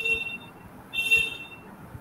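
High-pitched electronic beeping: one beep ends just after the start and a second beep sounds about a second in, lasting under a second.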